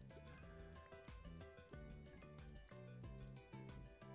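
Faint online slot game music: a light melody over a steady beat while winning symbols cascade.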